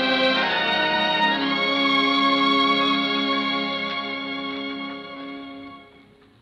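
Orchestral music: a long held chord that swells and then fades out near the end.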